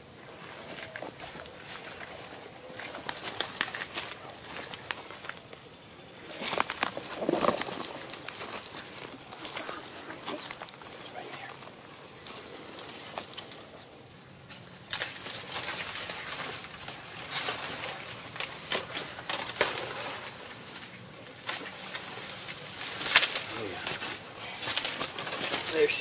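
Footsteps crunching through dry leaf litter and the crackle and scrape of bodies pushing through dry palmetto fronds, in irregular rustles and snaps.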